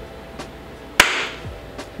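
A quiet pause broken by a single sharp smack about a second in, followed by a brief hiss.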